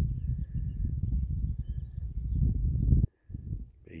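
Wind buffeting the microphone, a dense low rumble that cuts off suddenly about three seconds in, with faint high chirps of distant birds above it.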